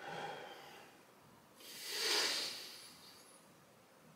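A man's deep breaths through nose and mouth during hypopressive abdominal exercise: a short breath at the start, then a longer, louder one that swells and fades about two seconds in.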